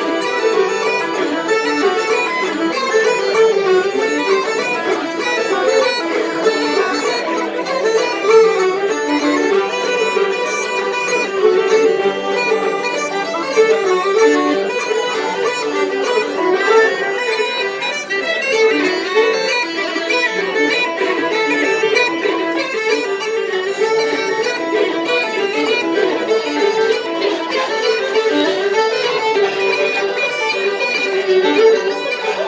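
Irish traditional session music: fiddle and uilleann pipes playing a reel together at a steady, brisk pace, without a break.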